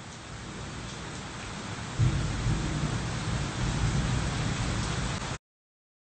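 Steady rain, joined about two seconds in by a deep rumble of thunder that rolls on until the sound cuts off suddenly near the end.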